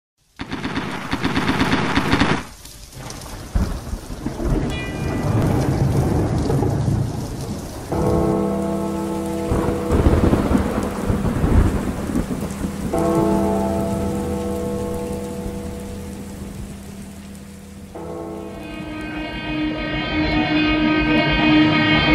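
Thunder and rain: a storm soundscape over an intro. Sustained chord tones come in about eight seconds in, stop, return twice, and settle into a steady drone near the end.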